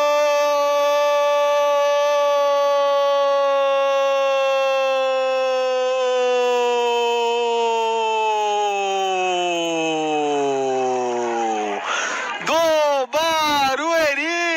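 Football commentator's drawn-out 'goooool' cry, one held note for about twelve seconds that sags in pitch near the end, followed by a few short rising-and-falling shouts.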